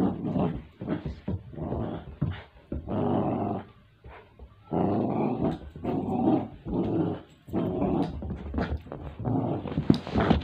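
Dog growling in play with a plush toy in its mouth: a string of short growls, each up to about a second long, with brief pauses between them.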